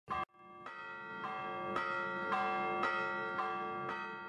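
Bells struck one after another, about two strokes a second, each ringing on into the next and growing louder, with a short blip at the very start.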